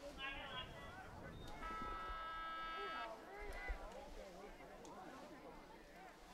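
Faint, distant shouts and voices of players and spectators around an outdoor soccer pitch during a stoppage. A steady pitched tone is held for about a second and a half near the middle.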